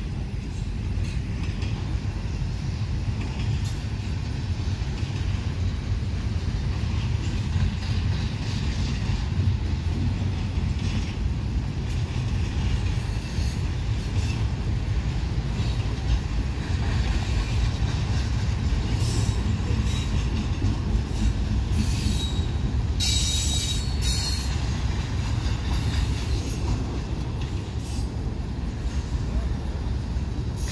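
Freight train of double-stack container cars rolling past at close range: a steady low rumble of steel wheels on rail, broken by intermittent high wheel squeals and clicks that are loudest about three-quarters of the way through.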